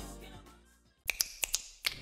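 The tail of a music jingle fading away in the first second, then, after a brief hush, a quick run of about five sharp clicks or snaps in the second half.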